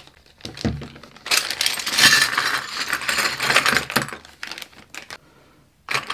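A plastic bag crinkling, then a pile of small hard plastic puzzle pieces tipped out of it onto a table, clattering together for a couple of seconds, followed by a few light clicks as the pieces settle and are spread about.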